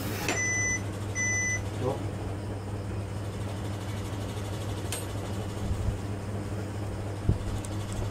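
Two short electronic beeps near the start, about a second apart, then a steady low hum with a faint click and a soft knock later on.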